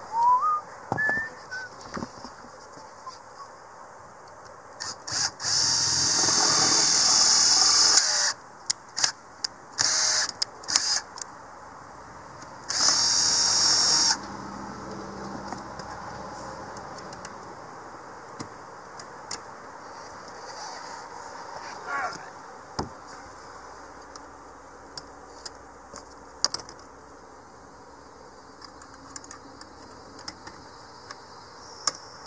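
Cordless drill running in two bursts, about two and a half seconds and then a second and a half, with a high whine as it drills out a hole in the vent lid's metal pipe arm to take a rivet. Short clicks and taps come between the bursts.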